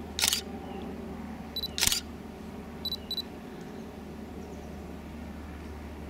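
A digital camera's shutter fires twice, about a second and a half apart. Short high autofocus-confirmation beeps sound just before the second shot, and a double beep about three seconds in.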